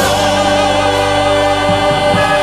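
Gospel-style choral music: a choir sings a new chord at the start and holds it steadily.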